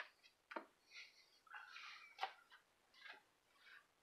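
Near silence, with a few faint rustles and light taps of a comic book in a plastic sleeve being handled and swapped on a shelf. The sharpest tap comes a little past the middle.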